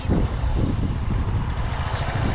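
Fuel-injected 125cc GY6-type scooter engine idling while the scooter stands still, heard as a low, uneven rumble.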